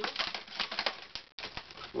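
Inflated latex modelling balloons rubbing and squeaking against each other as a 260 balloon is wrapped around twisted balloon bubbles: a rapid run of short squeaks and crackles.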